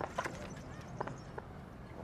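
A few irregular sharp clicks or taps, about five in two seconds, over a faint background hum.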